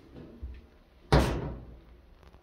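A single sudden loud bang about a second in, with a short ringing decay, from the tilted front-load washer and its drum. Softer knocks come just before it.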